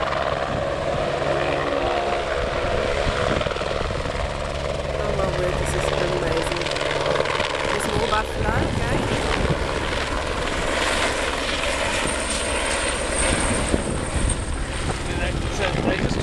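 Helicopter in flight, its rotor and engine running steadily and loudly.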